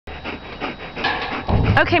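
A dog panting quickly and steadily, about six breaths a second, close to the microphone.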